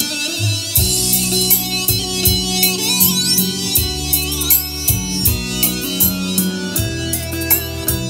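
Music with guitar and drums played back through a karaoke sound system with Pioneer X200 super tweeters connected, picked up in the room. The top end is crisp, with sharp, dense cymbal and hi-hat strokes over steady bass notes; the speaker calls it very lively ("rất là nảy").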